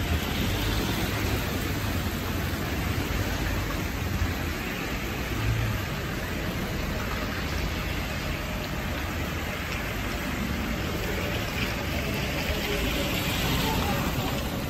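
Cars driving slowly along a wet city street, their tyres hissing on the wet road over a low engine hum.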